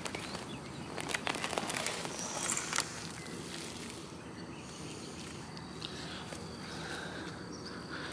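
Hands working loose garden soil: crackling and pattering as dirt and roots are pulled out and shaken for about the first three seconds, then quieter scraping and rustling in the soil over a faint steady outdoor background.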